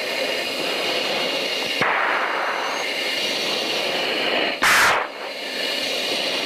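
Steady rushing hiss of jet flight noise heard over the aircraft's cockpit audio, with one sudden loud burst of noise lasting under half a second about three-quarters of the way through.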